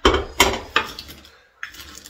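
Kitchen utensils, a spatula and a small metal measuring cup, clacking against a skillet and a glass baking dish while sticky cornflake bar mixture is scraped out. There are three sharp knocks in the first second and a softer one near the end.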